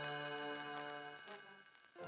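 Read-along record's page-turn chime: a bell tone, struck just before, ringing on and fading out over about a second and a half. It is the signal to turn the page.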